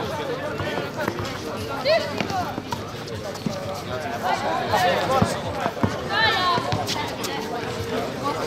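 A basketball bouncing now and then on an outdoor hard court, with players' shouts and calls over it.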